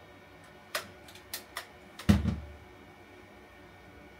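A few sharp clicks of small hard objects being handled, then a louder thump about two seconds in: a small handheld device being set down on a cardboard box.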